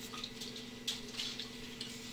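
Room tone: a low steady hum with a few faint, soft clicks.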